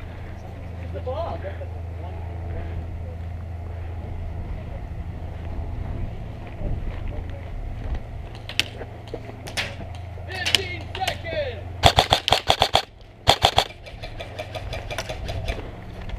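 An airsoft rifle firing. Single shots come about eight, nine and ten seconds in. Then comes a rapid full-auto burst of about ten shots, a brief pause, and a shorter burst near the end.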